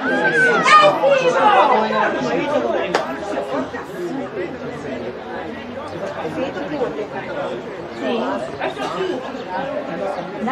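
Several people talking and calling out at once. One voice close by is loudest in the first two seconds, then a steady babble of overlapping voices carries on.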